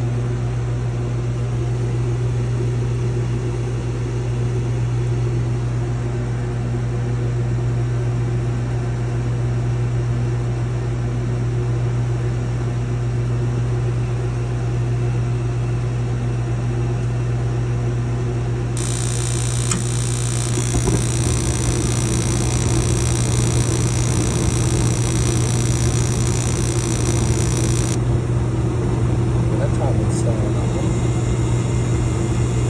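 Mr. Heater Big Maxx MHU50 gas unit heater starting its ignition cycle: the combustion air blower hums steadily, a high hiss starts about 19 s in, and about two seconds later the burners light with a low rumble that carries on, the hiss stopping shortly before the end.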